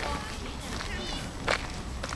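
Faint voices in the background, with one sharp click about one and a half seconds in, over a low steady rumble.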